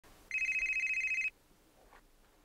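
Telephone ringing: a single electronic ring about a second long, a rapid trill.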